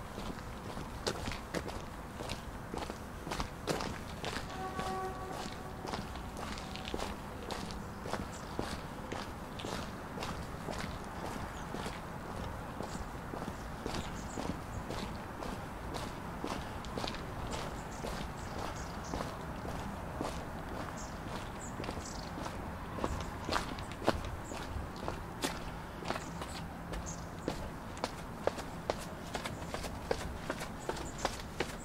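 Footsteps of a walker on a stone-paved path, at a steady pace of roughly two steps a second, over a steady background hum. A brief steady tone sounds about five seconds in.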